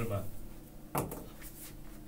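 A single sharp knock against a whiteboard about halfway through, then faint scratching strokes of a marker writing on the board.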